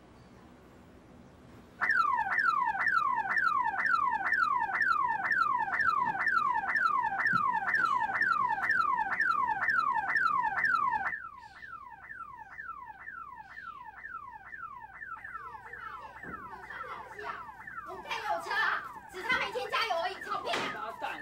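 Car alarm siren, a falling whoop repeated about three times a second, set off by a kick to the car. It starts about two seconds in, turns quieter and more distant around the middle, and voices join near the end.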